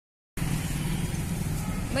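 Street traffic: a steady low rumble of motor vehicle engines.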